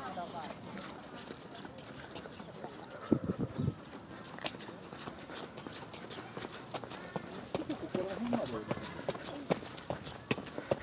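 Footsteps on a paved park path, an irregular run of short knocks, with people's voices talking nearby at the start and again near the end.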